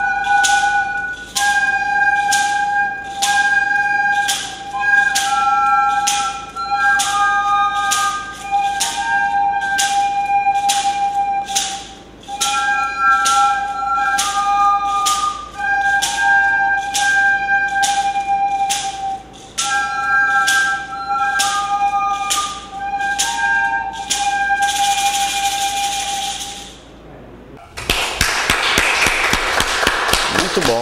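A group of soprano recorders playing a simple melody together, with a steady beat of sharp shaker strokes. The music stops about three seconds before the end and clapping follows.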